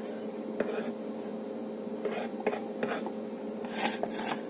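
A utensil scraping chopped tomato off a wooden cutting board into a plastic container, in a few short scrapes and taps, over a steady low hum.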